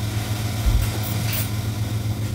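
A steady low hum with a faint background hiss, and a soft low thump a little under a second in.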